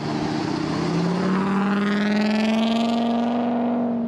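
Pickup truck engine accelerating: its pitch climbs over the first couple of seconds and then holds steady at the higher speed.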